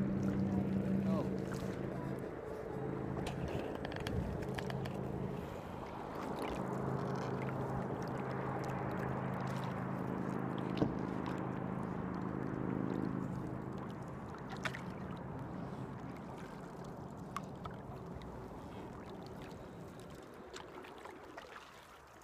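Canoe being paddled on a river, heard as wind and water noise on a phone's microphone with a few sharp knocks. A steady low engine-like hum runs underneath for the first thirteen seconds or so, then stops, and the sound slowly fades.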